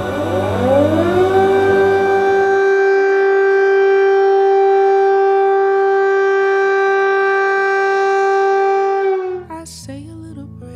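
Air-raid siren winding up in pitch over about a second, then holding one steady wail before dying away near the end.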